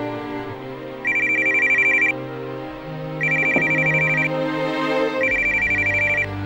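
Telephone ringing with an electronic trilling ring: three rings of about a second each, roughly a second apart, over background music.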